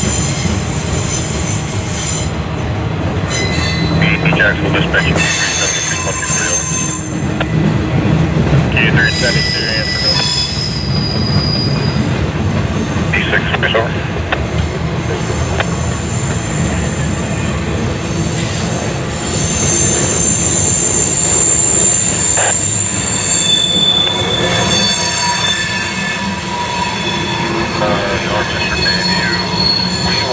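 Freight cars rolling past at close range: a steady low rumble of steel wheels on rail, with high-pitched wheel squeal that comes and goes in several tones.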